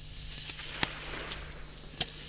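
Rifle shot on a shooting range: a single sharp crack a little under a second in, over a steady background hiss.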